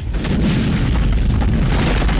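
Explosion-style sound effect for an animated logo: a sudden loud boom that carries straight on into a sustained, dense rumbling blast.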